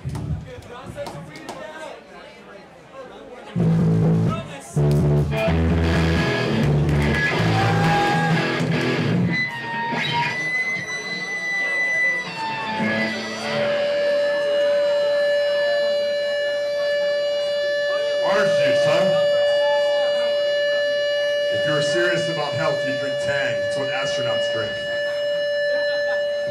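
Live punk band's distorted electric guitars and bass hitting loud chords for several seconds, then a single guitar feedback tone held steady from about halfway through, under scattered drum and cymbal hits.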